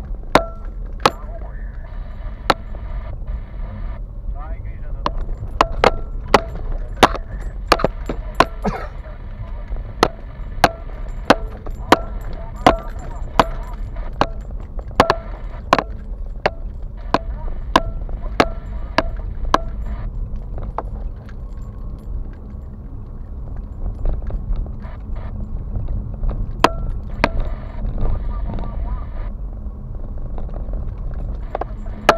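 Car cabin on a rough dirt road: a steady low engine and road rumble, broken by frequent sharp knocks and rattles as the car jolts over ruts and potholes, thickest in the middle of the stretch.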